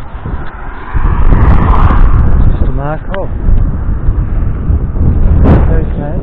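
Wind buffeting the microphone of a handlebar-mounted camera on a moving bicycle: a loud, gusty low rumble that gets much louder about a second in. A couple of short voice-like sounds come through it around the middle and near the end.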